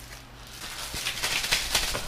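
Plastic bag crinkling and small clicks as a caster wheel is handled and fitted to a metal desk leg. The rustling and clicking get busier from about half a second in.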